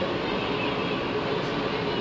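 Steady background din, a continuous even rushing noise with no distinct events.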